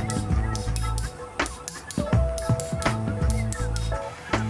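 Background music with held notes, over a few sharp hammer blows on a flattening tool set against a hot steel blade on an anvil.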